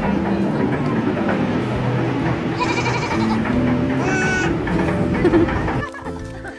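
A young goat bleating twice, first a short call about two and a half seconds in, then a quavering one about four seconds in, over background music.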